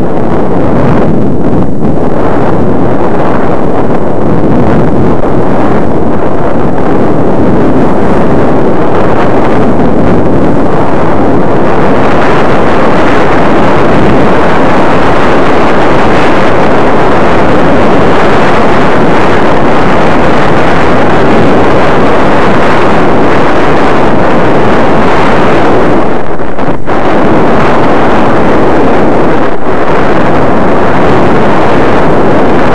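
Loud, steady rush of wind buffeting the microphone of a head-worn camera while skiing downhill, with skis running over the snow underneath. It gets stronger and hissier about twelve seconds in as the skier picks up speed.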